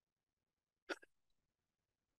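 Near silence, broken about a second in by one very short vocal noise from a man.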